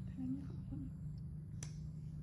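A single sharp lip-smack kiss about one and a half seconds in, with two short, soft voice sounds in the first second over a steady low hum.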